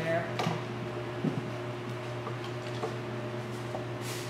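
A few light clicks and taps of small items being handled on a table, over a steady low electrical or fan hum.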